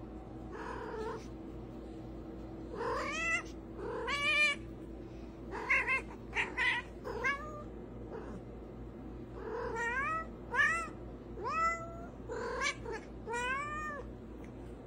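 A tabby cat meowing over and over: about a dozen short meows, many rising in pitch.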